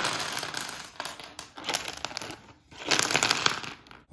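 Wooden Jenga blocks poured out of their box, clattering onto a hardwood floor in three rushes with short gaps between.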